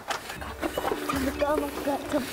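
Voices, with light background music underneath.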